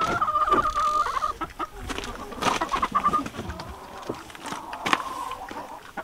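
A hen giving three drawn-out, wavering calls with clucks, mixed with rustling and knocks as she is handled.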